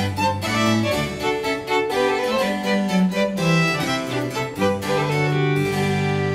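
Baroque opera accompaniment with no voice: bowed strings and a bass line play over a harpsichord continuo's quick plucked chords. Near the end the ensemble settles on a held chord.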